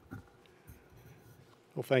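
Faint rustling and a few light handling knocks at the podium microphone, then a man starts speaking near the end.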